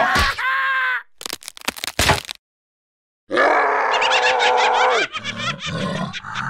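Cartoon character vocal sounds: a wordless, wavering yell, then a sharp burst of clicking sound effects. After a sudden cut to silence, a longer wordless voice with a wobbling pitch and more clicks near the end.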